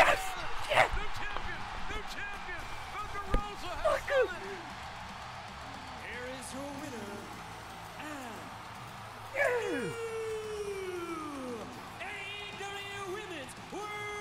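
A man shouting and yelling in excitement, with a few sharp thumps in the first few seconds, over a steady arena crowd cheer from the wrestling broadcast. About ten seconds in comes one long falling yell, and music with held notes comes in near the end.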